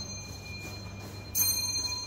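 Elevator arrival chime: a bright ding of several high tones, still ringing from a strike just before, then sounding again about one and a half seconds in.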